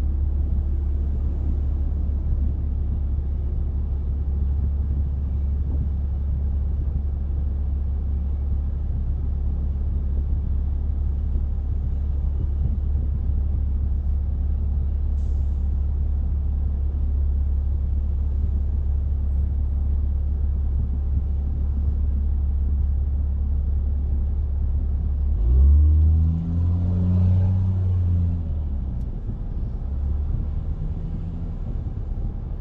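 A car driving, with steady low road and engine rumble. Near the end a louder engine note swells and shifts in pitch for about three seconds.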